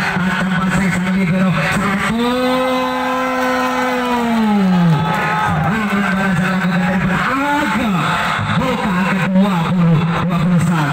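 A person's voice in long drawn-out calls, one held at a steady pitch for about three seconds from about two seconds in before falling away.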